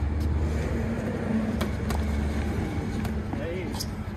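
Boxing gloves smacking focus mitts a few times at an uneven pace, over a steady low rumble.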